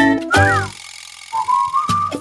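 Advertising jingle music ending on a held note, followed by a short whistled phrase that starts about a second and a half in.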